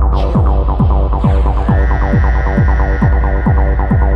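Techno track: a four-on-the-floor kick drum about twice a second over a steady low bass, with fast rippling synth notes on top. A higher, held synth tone comes in about halfway through.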